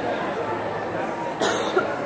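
A single cough close to the microphone about one and a half seconds in, over a steady murmur of voices.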